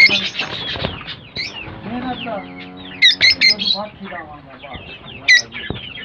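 A cage full of lovebirds chirping and calling: a dense run of short, sharp, high-pitched calls and whistles, with loud bursts right at the start, around three seconds in and about five seconds in. A lower, drawn-out pitched call or voice sounds briefly around two seconds in.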